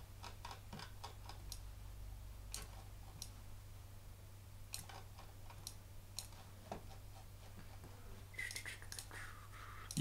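Faint, scattered clicks of a computer keyboard and mouse, a few keystrokes at a time with pauses between, over a low steady hum.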